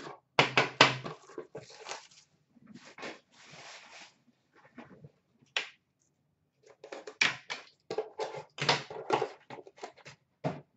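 Card boxes and a metal card tin being handled and set down on a glass counter: a run of knocks and clicks, a soft rustle around the third and fourth seconds, and a burst of knocks near the end.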